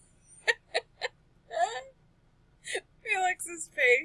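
Short, separate bursts of laughter and wordless voice sounds, with quiet gaps between them.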